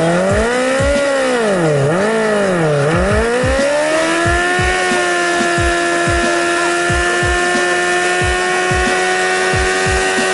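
Suzuki GSX-R 750 inline-four engine blipped hard three times, then revved up and held at high, steady revs for a standing burnout with the rear tyre spinning on the tarmac.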